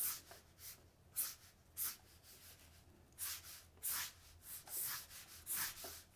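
Felt-tip marker drawing quick strokes across a sheet of paper: about ten short swishes, with brief pauses between groups.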